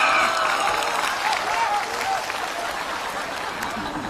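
Studio audience applauding and laughing; the laughter is strongest in the first second or two and the applause carries on, slowly easing.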